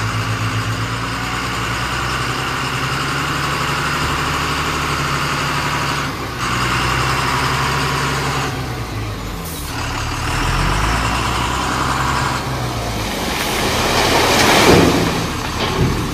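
Heavy vehicle's engine running steadily, its pitch dipping and rising again about two-thirds of the way through, with a rising hiss near the end.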